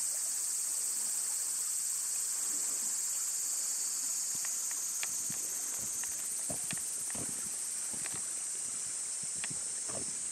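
Cicadas droning, a steady high-pitched shrill, with a few light footsteps in the second half.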